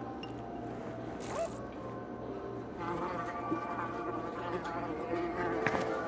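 A fly buzzing while trapped inside a glass jar.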